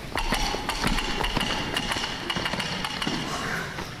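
Children's feet galloping on a wooden stage floor: a quick, irregular patter of knocks, with a low rumble from the boards in the first second or so.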